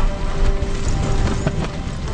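Horses' hooves splashing and clattering through a shallow river, with a deep rumble and orchestral film music underneath.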